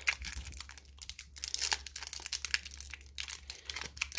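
Thick foil booster-pack wrapper crinkling and crackling in the hands as it is twisted and pulled at to tear it open; the wrapper resists and does not open.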